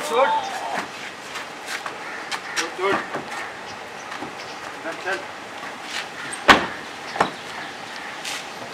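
Two men scuffling at a car, with short wordless shouts and grunts, then a loud sharp thump about six and a half seconds in and a lighter knock just after.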